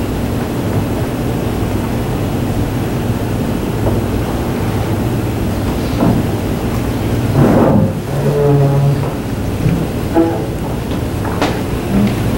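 Steady low hum and rumble of room noise, with a few brief louder sounds about two-thirds of the way in.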